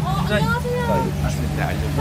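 People talking indistinctly over a steady low hum.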